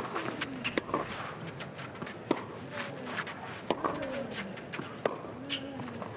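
Tennis rally on a clay court: sharp racket strikes on the ball about every one and a half seconds, with the players' footsteps on the clay between them.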